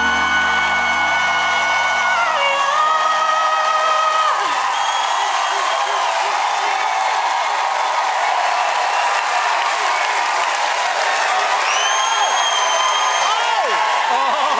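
A male pop singer and live band end a song on a held note, the band cutting off about two and a half seconds in. Then a studio audience cheers and applauds, with a few high whoops.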